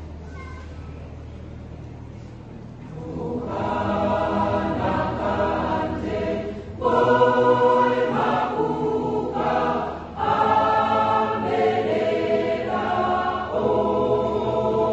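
Mixed-voice church choir singing, soft for the first few seconds, then swelling louder about three seconds in, with strong fresh entries near seven and ten seconds.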